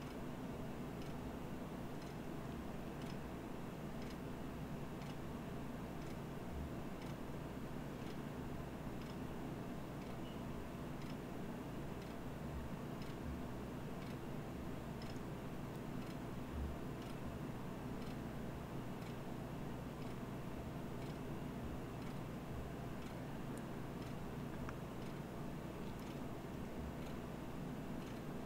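Faint regular ticks, about two a second, over a steady low hum: footsteps of someone walking at a normal pace along a carpeted hallway.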